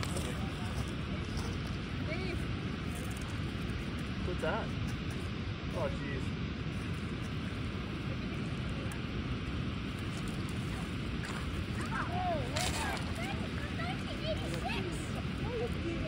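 Steady low rushing outdoor noise, with faint distant voices breaking through now and then and a brief click near the end.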